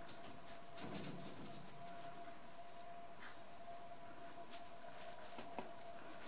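Faint rustling of stretchy black fabric handled between the fingers as a sewn fabric piece is turned right side out, with a couple of small ticks near the end, over a faint steady hum.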